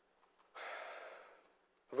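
A man's single audible breath, about a second long, starting about half a second in.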